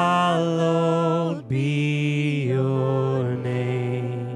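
Live worship band music: vocals holding long, sustained notes over guitars, with a brief break about one and a half seconds in and the held note stepping down in pitch about halfway through.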